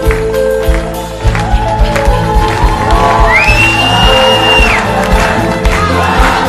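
Live band with violins and percussion playing an upbeat piece to a steady beat while the audience claps along. About halfway through, a high note rises, holds for over a second and drops away.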